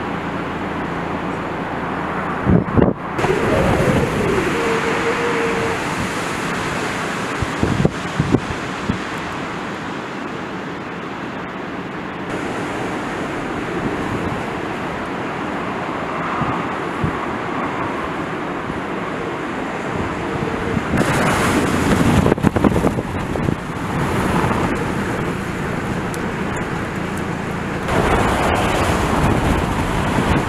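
Gale-force bura wind buffeting the microphone in gusts, with rough waves slapping against a harbour pier. The gusts are strongest around twenty seconds in and again near the end, and the sound changes abruptly at several points.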